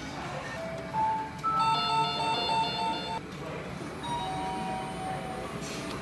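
A short electronic chime tune of stepped, steady notes plays about a second in, with a few more notes in the second half, over the background noise of a conveyor-belt sushi restaurant.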